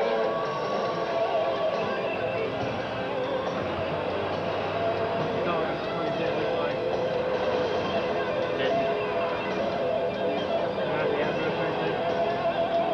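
Steady road and engine noise heard from inside a moving car, mixed with music and indistinct voices.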